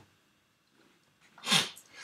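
One short, sharp burst of breath noise from the lecturer about one and a half seconds in, in a pause between sentences.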